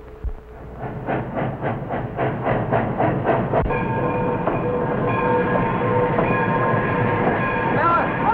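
Steam locomotive running, its exhaust chuffing in even beats about three times a second. From about halfway through, a long steady chord of several held notes sounds over the train.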